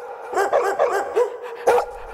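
Small dog yipping: a quick run of short, high barks about half a second in, then single yips around a second in and near the end, the last one the loudest.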